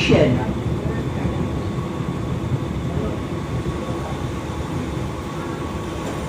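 Suburban EMU local train running slowly alongside a station platform, heard from its open doorway: a steady rumble with a faint steady whine, easing gradually as the train slows.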